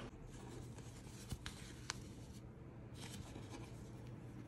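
Faint rubbing and rustling of paper as hands handle a paper envelope and its sleeve, with two light ticks a little over a second and about two seconds in.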